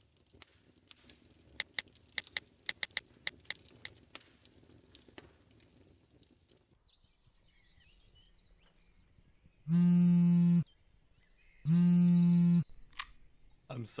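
Scattered crackling clicks, then a few bird chirps, then the loudest part: two steady buzzing tones, each about a second long and about two seconds apart, like a telephone ringing out on the line.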